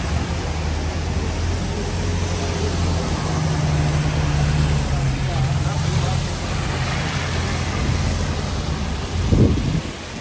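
Red double-decker bus passing close by, its engine running with a low, steady drone over the noise of traffic on a wet street. A brief louder surge comes near the end.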